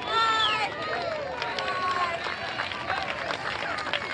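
Several people's voices calling out and talking over one another, the loudest a high exclamation right at the start.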